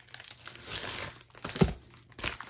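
Plastic packaging crinkling and rustling as a silver bubble mailer and a plastic-wrapped diamond painting canvas are handled. There is one soft thump about one and a half seconds in, as the packet meets the table.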